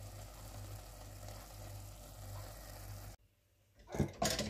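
Steady low hum with a faint hiss from the kitchen around a pot cooking on a gas stove. It cuts off suddenly about three seconds in, and a light tap follows at the very end.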